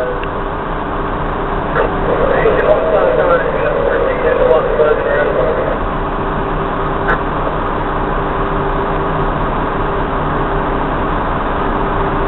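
Fire rescue truck's engine running steadily, heard from inside the cab as an even hum. Muffled voices come through for a few seconds in the middle.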